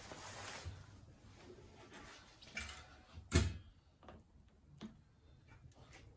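Old fuel-tank sending unit being worked out of the opening of a drained metal fuel tank: faint scraping and a few light clicks, with one sharp metal knock about three seconds in.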